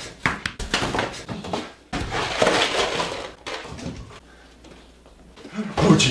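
Household items knocking and clattering as someone rummages hurriedly through a lower kitchen cabinet, with a louder rattling stretch about two seconds in that then dies down.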